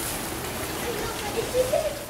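Steady hiss of wet snow falling on leaves and wet pavement, with a brief voice near the end.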